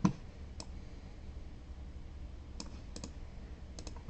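A dull thump at the very start, then a few scattered clicks of computer keyboard keys being pressed, over a low steady hum.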